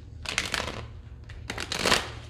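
A tarot deck shuffled by hand on a table, with the halves of the deck pushed back together: two short runs of card noise, the second louder, near the end.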